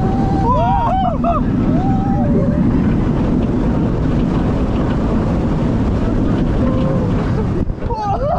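Steady rush of wind over the microphone and the rumble of a Bolliger & Mabillard hyper coaster train running at speed over its track, with brief cries from riders in the first couple of seconds.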